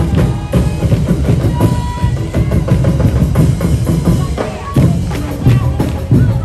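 Drum-driven Sinulog street-dance music: heavy, rapid bass drum and snare beats, with a short held high note about one and a half seconds in.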